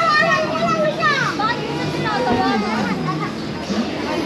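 Young children's voices chattering and calling out at play, high-pitched and rising and falling, with a few sweeping calls about a second in.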